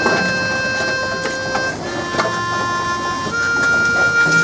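Background music: a harmonica playing long held notes, moving to a new note every second or two.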